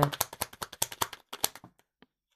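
A tarot deck being shuffled by hand: a rapid run of papery card clicks that thins out and stops shortly before the end.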